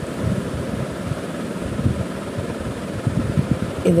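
Low, gusty rumble of wind noise on the microphone, rising and falling irregularly with no distinct strokes or tones.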